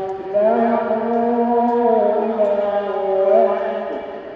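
A man's Quran recitation over a mosque loudspeaker: one long drawn-out vowel, held on an almost steady pitch with a slight waver, beginning a moment in and ending just before the next phrase.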